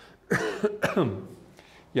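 A man coughing a few times in quick succession, clearing his throat, for about the first second.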